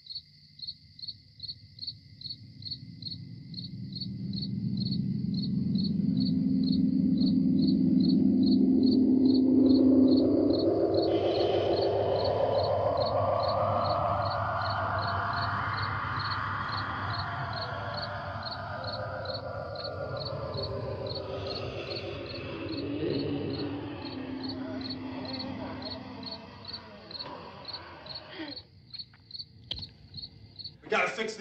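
Crickets chirping at an even pace under an eerie film-score swell that climbs in pitch, grows loudest about a third of the way in, then fades back down.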